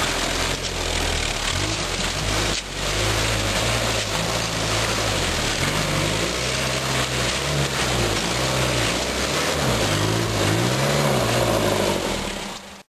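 Series Land Rover engine pulling through mud, its pitch rising and falling again and again as the driver works the throttle. A single sharp knock comes about two and a half seconds in.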